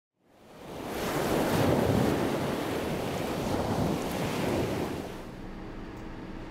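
A rushing, surf-like noise fades in over the first second, swells, and dies away shortly before the end.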